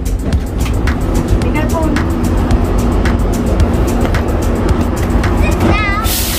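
Background music over the low, steady rumble of a GO Transit commuter train standing at the platform.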